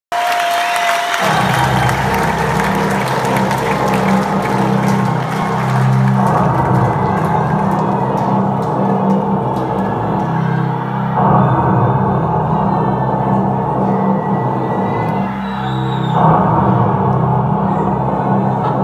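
Loud live concert sound heard from the audience: a low, sustained synthesizer chord starts about a second in and holds, shifting roughly every five seconds, as the opening of a song, with the crowd cheering over it.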